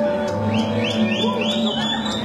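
Live salsa band music: percussion hits over a held bass note, with a run of high sweeping figures starting about half a second in.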